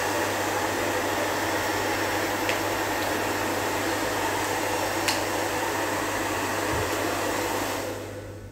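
Handheld hairdryer blowing steadily with a low hum, heating melamine film so it lifts from a cabinet door; the blowing dies away near the end.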